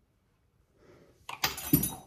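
A brief clatter of kitchenware with a ringing metallic or glassy clink, about a second and a half in, after a faint rustle.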